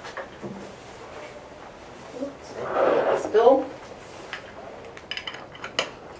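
Wooden Jenga blocks clicking and tapping as a block is nudged and slid out of the tower, with a quick run of small clicks near the end. A voice briefly murmurs about halfway through.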